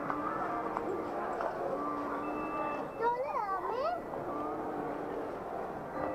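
Store background music with held notes over a general shop murmur. About three seconds in, a high voice rises and falls in pitch for about a second.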